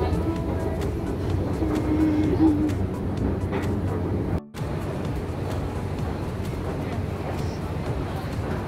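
Steady low hum and background noise of a long outdoor escalator ride, with passers-by around. The sound cuts out for a moment about four and a half seconds in, and a similar steady street background noise follows.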